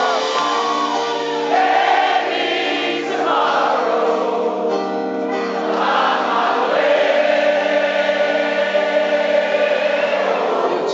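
A live rock band playing a slow song with acoustic guitar and sustained chords, while the audience sings the melody along in unison like a choir.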